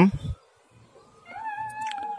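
An animal's drawn-out call begins a little over a second in, rising briefly and then holding one steady pitch.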